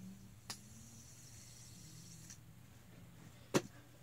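Fidget spinner spinning in the hand with a faint whirring hiss that fades out after about two seconds, then one sharp click near the end.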